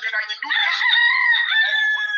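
A single long, high-pitched held call, about two seconds long, that sags slightly in pitch at the end, following a moment of speech.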